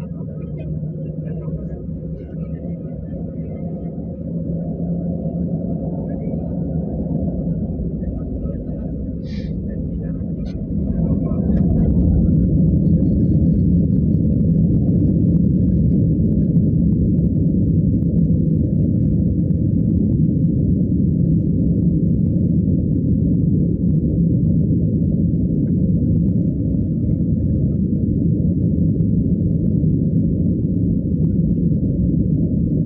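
Boeing 737-900ER's CFM56-7B engines heard from the cabin during the takeoff roll: a low, steady drone that grows louder over the first seconds, then steps up sharply about twelve seconds in as takeoff thrust comes on, and holds there.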